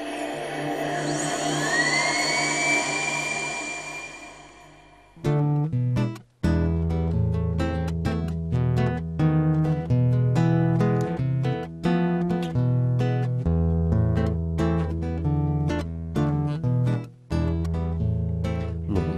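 An ambient music intro swells and fades out over the first five seconds or so. Then an acoustic guitar starts the instrumental introduction to a traditional Catalan folk song, strumming chords over bass notes in a steady rhythm.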